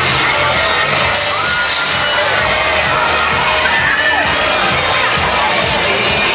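Riders screaming and shouting on a spinning fairground thrill ride over loud fair music with a steady beat. A burst of hiss comes in about a second in and lasts about a second.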